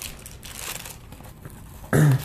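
Clear plastic accessory bags crinkling as they are handled inside an opened microphone box, busiest in the first second. A loud cough comes right at the end.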